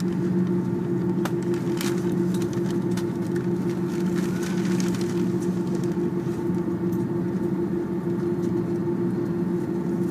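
Inside the cabin of an Airbus A330-300 taxiing after landing: a steady drone of the engines at idle and the cabin air, with a low hum holding two steady tones. A few faint clicks and rattles come in the first half.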